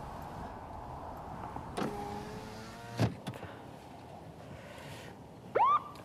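Car's electric power window motor running for a little over a second, ending with a sharp knock about halfway through, with the steady hum of the car cabin underneath.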